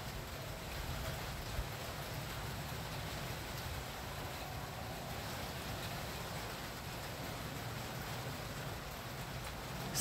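Steady, faint outdoor background noise with no distinct sound source, and one small click about one and a half seconds in.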